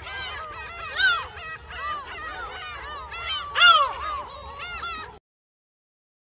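King penguin colony calling: many birds trumpeting at once in overlapping, warbling calls, with a few louder calls standing out. The calls cut off suddenly about five seconds in.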